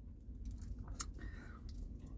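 Quiet eating sounds from a man holding a sub sandwich: faint mouth and handling noises, with one sharp click about a second in, over a low steady rumble inside a car.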